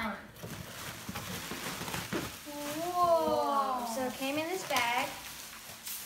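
Cardboard box flaps and plastic air-cushion packaging rustling and crinkling as a package is unpacked. A child's voice rises over it for a couple of seconds in the middle.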